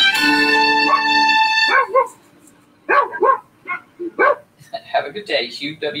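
Guitar music ends about two seconds in, then a dog gives a run of short barks.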